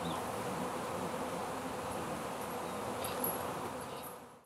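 A swarm of honeybees buzzing steadily in the air around a hive body as the swarm settles in. The heavy flight activity is what the beekeeper takes as a sign that the queen may now be in the hive.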